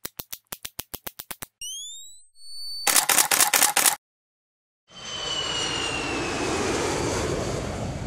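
Intro logo sound effects: a quick run of ratcheting clicks like a camera's mode dial turning, a few short rising whistles, a rapid burst of camera shutter clicks, then from about halfway a jet aircraft passing, a steady rush with a slowly falling whine.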